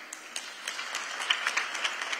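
Audience applauding: a steady spread of many hand claps.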